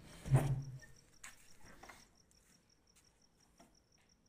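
A cricket chirping steadily and faintly, short high chirps about four times a second. Near the start there is a brief louder low sound, followed by a few faint clicks.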